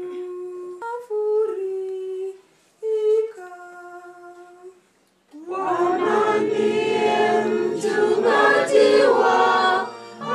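Congregational hymn singing through a microphone. For the first five seconds a single woman's voice sings alone in long held notes with short breaks. About five seconds in, the congregation, mostly women, joins in and the singing becomes fuller and louder.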